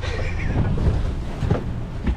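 Wind buffeting the microphone aboard an offshore fishing boat, over a steady low rumble of boat and sea noise, with a single knock about one and a half seconds in.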